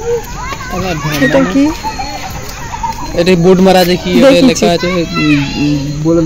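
People talking close to the microphone, a child's high voice among them, with a lower voice speaking from about halfway through.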